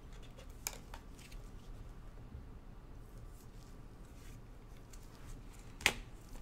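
Trading cards being handled: soft scattered clicks and rubbing as the cards slide against each other, with a sharp click less than a second in and a louder, sharper click near the end.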